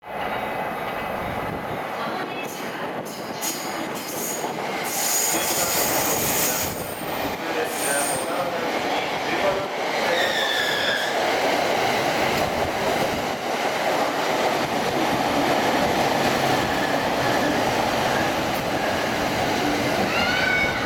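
A Tōkaidō Line electric commuter train runs into the platform with a steady rumble of wheels on rail. It gives brief high squeals in the first few seconds and a short gliding whine about ten seconds in.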